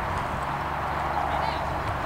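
A pony's hoofbeats on the arena surface during a showjumping round, heard against a steady background haze.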